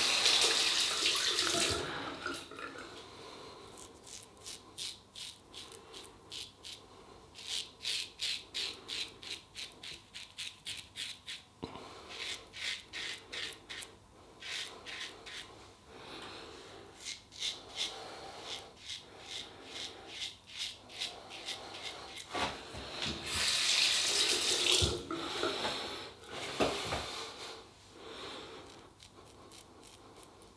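Short scraping strokes of a 1966 Gillette Superspeed double-edge safety razor, fitted with a new Polsiver Super Iridium blade, cutting through lathered stubble in runs of about three strokes a second. A tap runs briefly at the start and again for about three seconds three-quarters of the way through.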